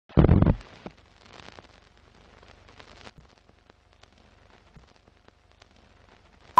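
Old-film countdown-leader sound effect: a loud, short burst right at the start, then faint scattered pops and crackle like a worn film soundtrack.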